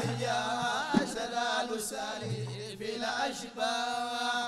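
Men chanting a Sudanese madih, a sung praise of the Prophet, a lead voice carrying the melody over frame drums, with one sharp drum stroke about a second in.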